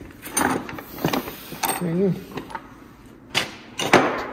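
Hand tools knocking and clinking together as someone rummages through a rolling tool cart, several separate sharp clanks spread across the few seconds.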